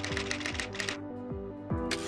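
Typewriter keys striking in a quick run of clacks, typing out a line, over background music with a steady bass line. The clacks stop about a second in, and a short rushing noise comes near the end.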